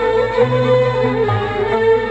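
Egyptian classical Arabic ensemble playing a melodic passage led by violins in unison, with oud and qanun.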